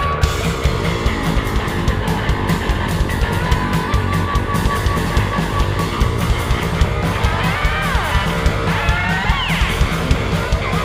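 A cow-punk rock band playing live: electric guitars, bass and drums with a steady beat. Near the end a lead line bends up and down in pitch.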